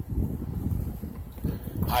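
Low, uneven rumble of outdoor street noise and wind buffeting a handheld phone's microphone.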